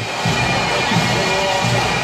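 Bagpipes playing a tune over their steady drones, with a low thump about every three quarters of a second.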